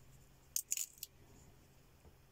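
Washi tape being pulled off its roll and laid along the edge of a paper tag: three or four short, faint, high-pitched rips about half a second to a second in.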